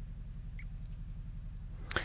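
Low steady electrical hum in a quiet room, with one faint click about half a second in.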